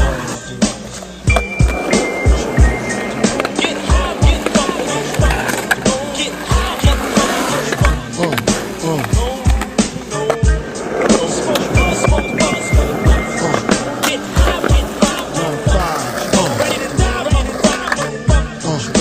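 Skateboard wheels rolling and the board knocking on concrete, mixed with a hip-hop beat that has no vocals.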